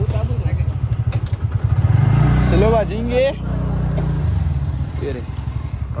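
Small scooter/motorcycle engine idling with a fast, even putter, then revving up about two seconds in as it pulls away and easing back about two seconds later. A voice calls out over the engine in the middle.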